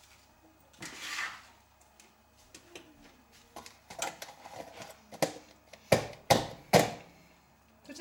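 Kitchen knife scraping and tapping on bread and a wooden chopping board: scattered light clicks and scrapes, then four sharp knocks close together near the end.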